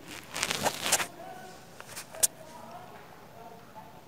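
Scissors cutting fabric or thread, with rustling cloth, for about the first second. Then a couple of light clicks, the sharper one about two seconds in, as the scissors are handled and set down on the sewing table.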